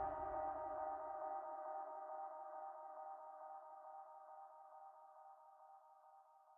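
Closing held chord of an electronic dance track fading out: the low bass drops away in the first second or two, leaving sustained mid-range tones that grow steadily quieter toward silence.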